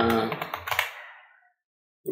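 Computer keyboard keys tapped in a quick run over the tail of a drawn-out spoken syllable, fading out about halfway through, then silence.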